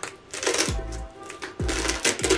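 Velcro fastening on a burlap gnome's back being pulled open by hand: two short rasping tears, about half a second in and again near the end. Background music with a steady beat plays underneath.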